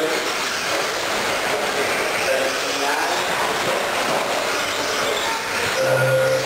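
Electric 2WD stadium trucks racing on an indoor dirt track: a steady, noisy mix of motor and tyre sound with no clear pitch.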